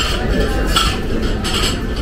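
Tableware clinking at a meal: chopsticks and cutlery against plates, about three light clinks, over a steady low murmur of room noise.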